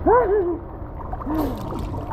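A man's wordless hooting call, a pitched "hoo" that rises and falls, followed about a second later by a second, lower one. Pool water sloshes against the camera at the surface, with a brief splash about a second and a half in.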